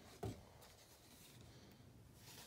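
A single short knock about a quarter second in, then faint rubbing, as a hand handles things at a bathroom sink and picks up a plastic bottle; otherwise near silence.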